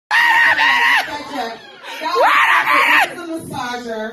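A woman screaming twice, high-pitched and loud, each scream about a second long. The second scream sweeps up, holds, then drops.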